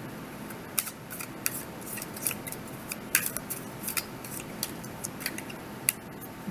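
A tarot deck being shuffled by hand: short, crisp card snaps at an irregular pace of a few a second, starting about a second in.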